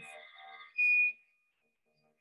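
Faint trailing music, then a single short high whistle-like note, about a third of a second long, a little under a second in, followed by near silence.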